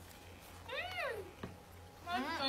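A single short meow-like call, quiet and high-pitched, that rises and then falls in pitch about a second in, over a low steady hum.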